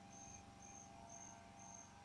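Near silence: faint room tone with a soft, high-pitched chirp repeating about twice a second.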